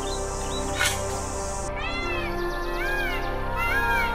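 Background music with a single sharp strike a little under a second in, then three short animal cries in the second half, each rising then falling in pitch.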